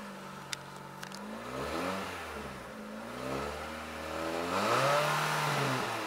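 Renault Twingo RS's naturally aspirated 1.6-litre four-cylinder engine, heard from inside the cabin, revved twice from idle while parked. The second rev, about halfway through, goes higher and louder than the first before dropping back to idle.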